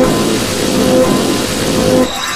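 Black MIDI piano playback through a Casio LK-300TV soundfont: tens of thousands of notes a second sounding at once, merging into a dense, noisy mass of piano tone with a few held pitches showing through. It drops away abruptly at the end.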